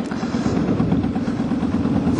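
Kawasaki Vulcan Mean Streak 1600's V-twin engine running steadily under way, a continuous low pulsing exhaust beat that gets a little louder in the first half second.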